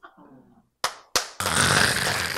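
A couple of sharp claps about a second in, then a small audience breaks into loud applause in a small room.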